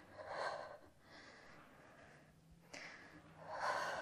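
A woman breathing hard during reformer push-ups: about four breaths in and out, the strongest about half a second in and near the end.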